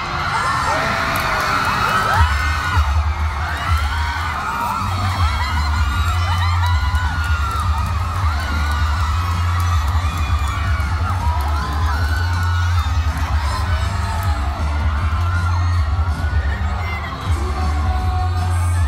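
A crowd of fans screaming and cheering in a large hall. Bass-heavy game music from the PA comes in underneath about two seconds in.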